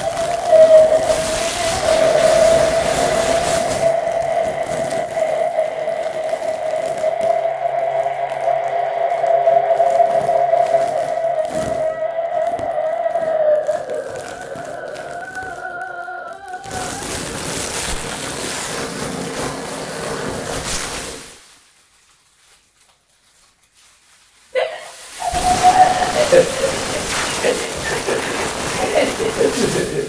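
Free improvisation for voice, melodica and live electronics: a long steady held tone for about fourteen seconds that then slides in pitch, then a noisy, textured passage. After a near-silent gap of about three seconds, wavering vocal sounds come in near the end.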